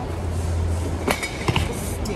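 A steady low rumble under a hiss of noise, with two short clicks about a second and a second and a half in.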